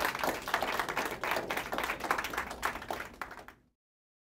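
Audience applauding: a dense patter of many hands clapping, cut off abruptly by an edit about three and a half seconds in.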